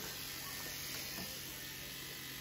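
Electric hair clippers running, a quiet, steady hum and hiss as they cut.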